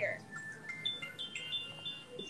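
Several high, clear chime notes sound one after another, each ringing on and overlapping the next.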